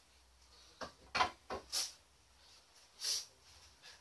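A few short, faint knocks and rustles of handling as a bat mallet is set down on a shelf and a cricket bat is picked up.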